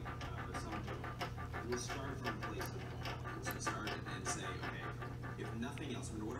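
Single tattoo needle stirring ink in a small plastic ink cap: a run of quick light clicks and scrapes, over a steady low hum.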